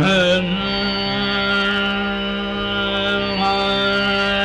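Male dhrupad voice singing raga Adana: a quick upward glide right at the start into one long held note, sung steadily over a tanpura drone.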